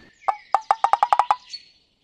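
Comic sound effect: a quick run of about nine short pitched pops, rising slightly in pitch over about a second.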